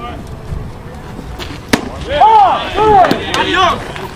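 A single sharp pop of a pitched baseball about halfway through, then several players and spectators yelling at once for about two seconds.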